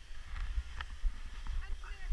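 Wind buffeting a head- or chest-mounted action camera's microphone as the skier moves downhill, with the scrape of skis on packed snow. Faint voices of other skiers come in during the second half.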